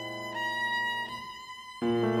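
Viola and piano playing a slow, lento chamber-music passage. The viola holds a high sustained note, the sound thins out for a moment, then a louder, lower note enters near the end.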